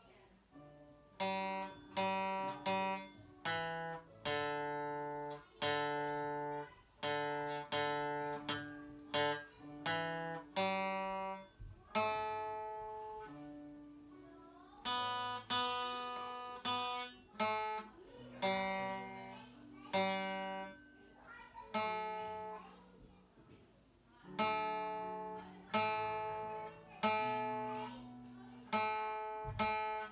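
Steel-string acoustic guitar played solo: chords struck one after another and left to ring, with short pauses between phrases of a folk blues tune.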